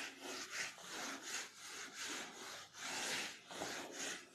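Whiteboard duster wiped across a whiteboard in repeated uneven back-and-forth strokes, a soft scrubbing swish of about two strokes a second.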